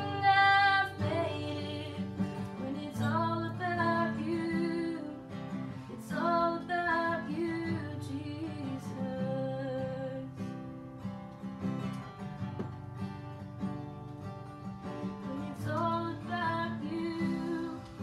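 A woman singing a worship song to her own strummed acoustic guitar. Her voice drops out for a guitar-only stretch in the middle and comes back near the end.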